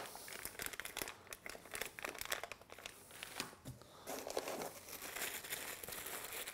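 Small clear plastic bags of printer-kit parts being handled, crinkling faintly with irregular crackles.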